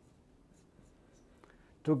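Marker pen writing on a glass lightboard: a few faint, short strokes as letters are written. A man's voice starts near the end.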